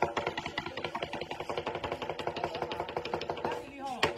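Lion dance percussion playing a fast, even roll of strikes, about ten a second.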